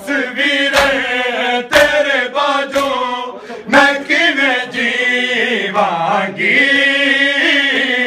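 A group of men chanting a Punjabi nauha (mourning lament) in unison, with sharp slaps of hands beating on bare chests (matam) about once a second, keeping time with the chant.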